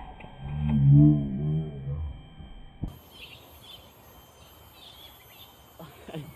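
A loud, low, wavering moan lasting about a second and a half, followed by a sharp click and then faint high chirping.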